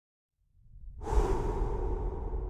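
Intro whoosh sound effect: after a moment of silence a low rumble builds and swells about a second in into a steady, airy rushing noise.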